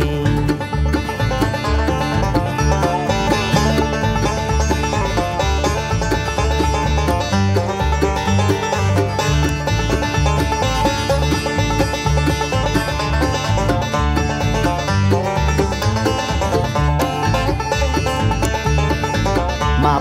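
A bluegrass band playing an instrumental break between verses: quick-picked banjo and acoustic guitar over an upright bass line, with no singing until the vocal comes back in at the very end.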